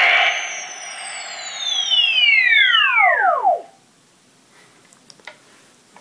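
Matty Collector Neutrino Wand prop toy's electronic particle-stream sound effect at half power, loud and vibrating. It ends in a whistling tone that falls steadily from very high to low over about three seconds, then cuts off.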